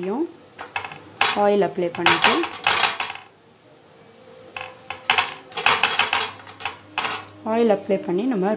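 Metal clinking and scraping against a stainless steel plate in a few short clusters, about two and five seconds in, while parotta dough is worked on it.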